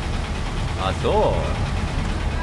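Steady low rumble of vehicle engines in street traffic, with a short rising-and-falling vocal sound from a man about a second in.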